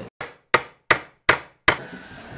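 A hammer striking a steel nail on a wooden block five times, about 0.4 s apart, each a sharp knock that dies away quickly. The nail bends over under the blows.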